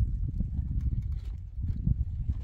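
Wind buffeting the microphone as an uneven low rumble, with faint light clicks and rattles of wire mesh being handled and fastened to a wooden post.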